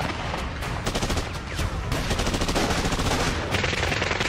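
Rapid automatic gunfire, many shots in quick succession running together throughout.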